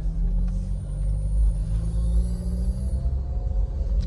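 Nissan Grand Livina's 1.8-litre four-cylinder engine and road rumble heard from inside the cabin while driving, the engine note rising slightly as the car pulls.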